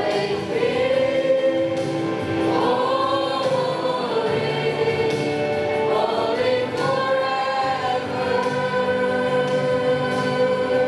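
A mixed choir of young voices singing a hymn through microphones, in long held notes that slide from one pitch to the next.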